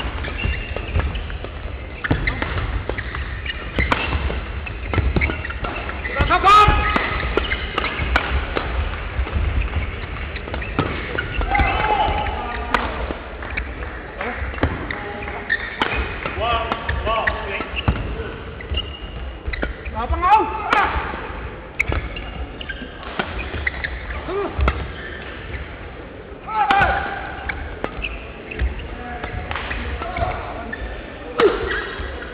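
Badminton rally: repeated sharp racket strikes on the shuttlecock and short squeaks of shoes on the court mat, with voices in the hall.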